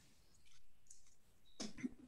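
Faint computer mouse clicks over quiet room tone.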